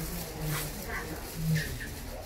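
Two short, quiet hummed murmurs of a voice, about half a second and a second and a half in, with faint plastic-bag rustling as produce is bagged at a shop counter.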